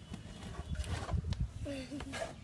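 Background voices, with low rumbling and a couple of brief knocks.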